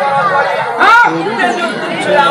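Voices talking over crowd chatter, with one loud rising-and-falling call near the middle.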